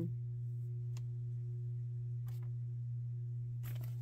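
Ceiling fan running with a steady low hum.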